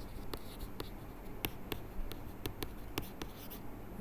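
Stylus writing on a digital tablet: irregular sharp taps of the pen tip with light scratching as a word is handwritten.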